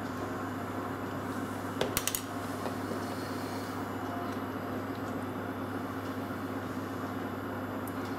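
Small plastic bottles handled and set down on a counter, making a short cluster of quick clicks about two seconds in, over a steady electrical hum.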